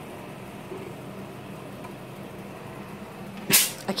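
A steady low hum, with a brief loud hiss about three and a half seconds in.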